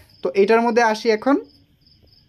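A man talking briefly, then a cricket chirping faintly, a thin high chirp repeating about three times a second in the pause.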